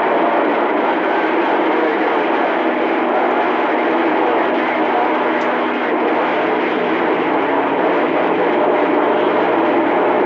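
CB radio receiver putting out a steady, loud rush of static and hiss with no intelligible voice, its squelch open to a noisy channel while the signal meter shows something coming in.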